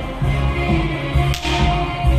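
Circus band music playing with a steady bass beat, and one sharp whip crack about a second and a half in from the animal trainer's whip in the ring.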